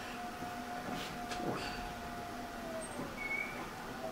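Quiet, steady background hum with a faint held tone and a few soft ticks.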